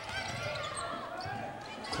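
Live basketball game sound in a large gym: the ball bouncing on the hardwood court, with voices and crowd murmur echoing in the hall.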